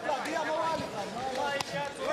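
Indistinct voices in the background, with a single sharp knock about one and a half seconds in.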